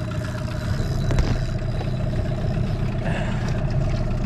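Small boat's outboard motor running steadily at trolling speed, a low rumble with a constant pulsing whine, and a single sharp knock about a second in.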